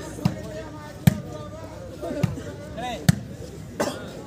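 Volleyball being struck again and again during a rally: five sharp slaps of hands on the ball, about a second apart, over a background of voices.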